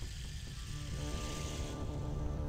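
Tense film score: a steady low rumbling drone under a swelling high hiss, with sustained music tones coming in about a second in.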